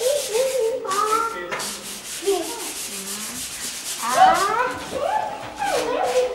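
Fast, repeated rubbing or scraping noise, with wordless voice sounds that slide up and down in pitch, the loudest about four seconds in.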